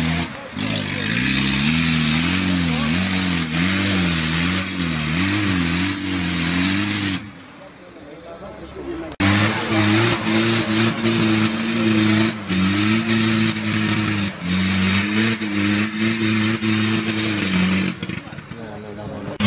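Off-road 4x4 engine revving up and down repeatedly under load as it climbs a muddy, rutted slope. After a brief lull about halfway through, an engine holds a steadier, higher rev with a few stepped changes in pitch.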